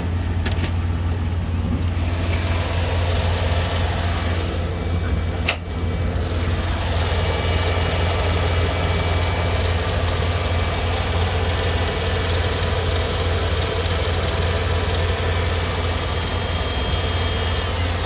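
A 2001 Mercedes ML320's 3.2-litre V6 idling steadily with a constant low hum, which the presenter judges to sound pretty good. A single sharp click comes about five and a half seconds in, and after it the engine comes through more clearly.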